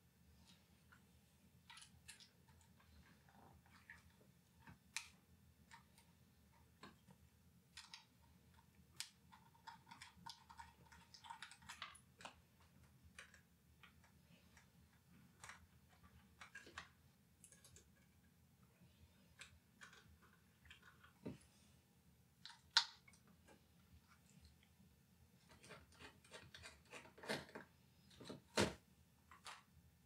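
Sporadic small clicks and taps from work on a laptop hard drive and its metal mounting bracket: tiny screws being undone with a precision screwdriver, and small metal parts handled and set down on a work mat. The sounds are faint, with a few sharper clicks in the second half.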